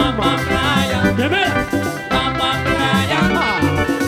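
Live Colombian tropical dance band playing: electric bass and guitar, horns and drums under a lead singer, with a steady, repeating bass line.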